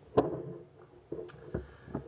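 A glass beer bottle is set down on a countertop with one sharp knock, followed about a second and a half later by a softer low thump.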